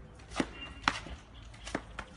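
Sharp hand slaps during a fast bodyweight push-up drill on concrete: three slaps, the middle one loudest.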